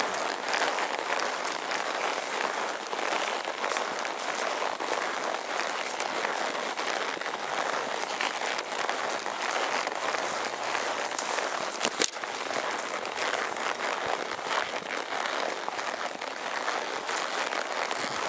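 Horses walking single file along a narrow brushy trail: a steady crackling rustle of leaves and branches brushing past, with scattered small clicks and one sharper click about twelve seconds in.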